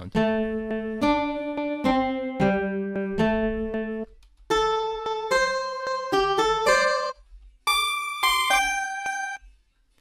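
Acoustic guitar sample played as a melody through Ableton's Simpler sampler in Texture warp mode, looping with a fade, so each note sounds held rather than plucked. It plays a string of single notes in three short runs with brief gaps between them, and the last run is an octave higher.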